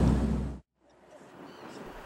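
Steady low rumble of a boat's motor with wind buffeting the microphone, which fades out about half a second in to a brief dead silence, after which faint background noise slowly comes back up.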